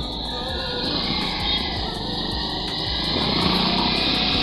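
Background pop music playing over the low rumble of wind and engine noise from a moving two-wheeler.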